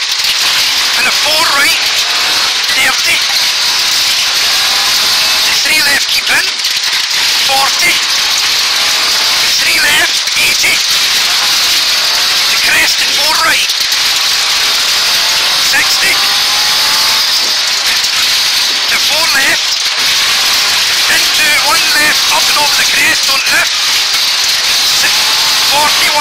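Ford Escort Mk2 rally car's Pinto four-cylinder engine running hard, heard loud from inside the cabin. The engine note rises and falls through gear changes, under a steady rush of road and tyre noise.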